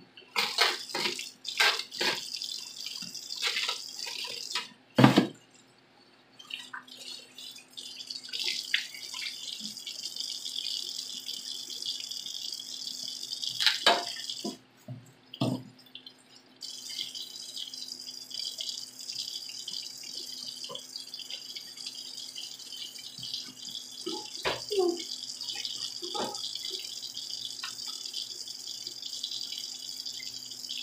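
A large stockpot of seafood-boil water boiling under its lid, a steady bubbling hiss with a faint hum beneath. A few sharp knocks cut through, the loudest about five seconds in.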